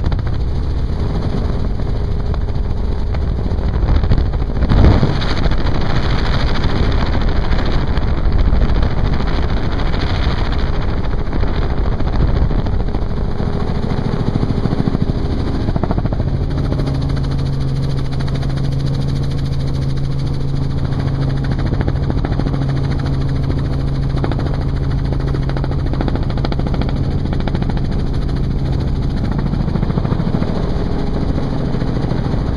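Helicopter in flight with its doors off: steady rotor and engine noise mixed with wind rushing through the open cabin. There is a louder surge about five seconds in, and a steady low hum comes in about halfway through.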